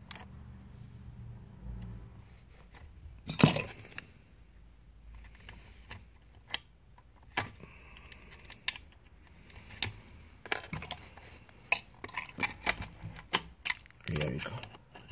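Small sharp clicks and knocks of plastic and metal as a hand tool and fingers work the plastic spacer mechanism of a manual curtain grommet press, forcing it open to make room. A louder knock comes about three and a half seconds in, followed by a run of irregular clicks.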